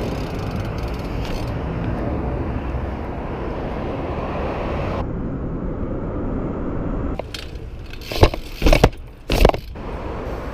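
Steady rush of street traffic and wind on the microphone while riding a BMX bike. In the last few seconds come several loud knocks and rattles from the bike on the pavement.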